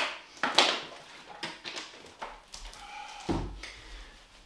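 A man drinking from a plastic water bottle: short clicks and crackles of the bottle and breaths. About three seconds in comes a low thump as the bottle is set down on the wooden floor.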